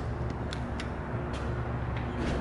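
A few light clicks as the elevator's up-call button is pressed, over a steady low hum.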